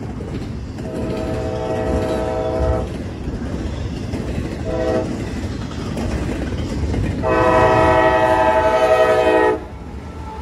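Diesel freight locomotive's air horn sounding for a grade crossing: a long blast, a short one, then a longer and louder blast that cuts off sharply near the end. Underneath runs the steady rumble of the approaching train.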